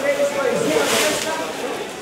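Paper raffle coupons rustling as they are tossed and stirred by hand in a large tub, the rustle strongest around the middle, over the chatter of voices.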